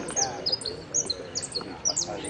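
Saffron finch (Argentine jilguero) singing: a fast string of short, sharp, high-pitched notes, each dropping quickly in pitch, with faint voices underneath.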